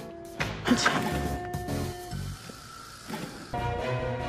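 Background score music with held tones, punctuated by a few sharp percussive hits in the first two seconds, swelling again near the end.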